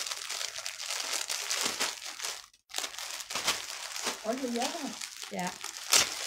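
Clear plastic clothing bags crinkling as packaged garments are handled, in irregular crackles, with a brief break about two and a half seconds in.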